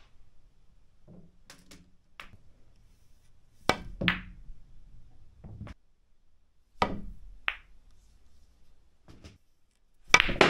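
Snooker shots: the cue tip striking the cue ball and balls clicking together, heard as short sharp clicks. The loudest pair comes a little under four seconds in and another pair near seven seconds, with fainter knocks of balls rolling into cushions and pockets in between.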